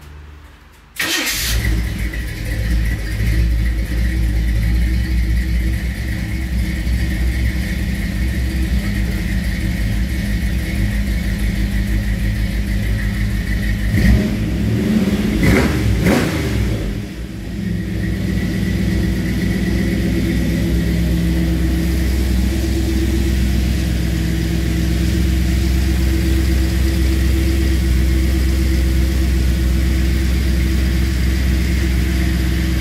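Classic Chevy Impala's carbureted V8 starting up about a second in and running at idle, with a few blips of the throttle around the middle before settling back to a steady idle.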